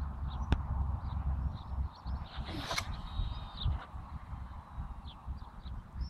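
A long casting rod swished through a cast, a single rising whoosh about two and a half seconds in, followed by a brief thin high whine as line runs out. Wind rumbles on the microphone throughout, with scattered faint bird chirps.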